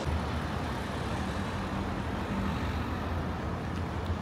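Road traffic on a city street: a steady low hum of passing cars.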